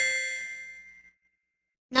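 A single bright chime sound effect, a ding struck once that rings out and fades away within about a second. It serves as a transition cue before the next part of the diagram is named.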